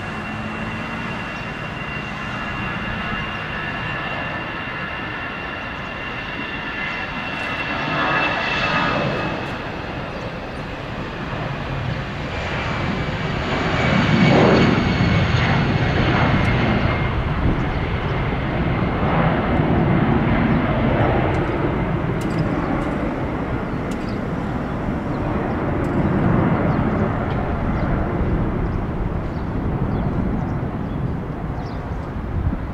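Airbus A320's CFM56-5B jet engines at takeoff power. A high fan whine slowly falls in pitch during the takeoff roll, then a loud, low rumble peaks about halfway through as the airliner lifts off near the microphone and stays loud as it climbs away.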